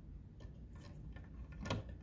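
Quiet room with a few faint ticks and one sharper click near the end, small handling clicks.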